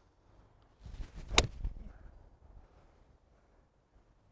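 A golf iron, a 4-iron, strikes a teed ball once with a single sharp click about a second and a half in. The shot is a low stinger hit off the tee.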